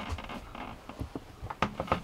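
About half a dozen light clicks and taps scattered over two seconds, from keys being pressed on a laptop.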